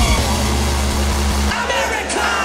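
Raw hardstyle music at a break: the kick drum stops and a held, distorted low bass note plays, then cuts out about one and a half seconds in, leaving crowd noise and a voice.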